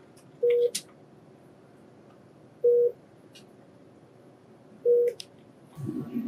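A short electronic beep on one steady tone, repeating about every two seconds (three times), over scattered clicks of computer-keyboard typing. A low thump comes near the end.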